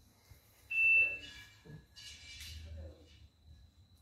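A single loud, high-pitched electronic beep a little under a second in, lasting about half a second with fainter tones trailing after it, followed by some rustling handling noise.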